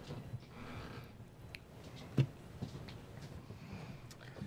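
Quiet handling sounds from fly tying at a vise: faint rustles and small ticks as materials are brought to the hook, with one sharp click a little past halfway.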